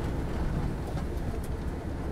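Steady low rumble of a van driving, engine and road noise heard from inside the cab.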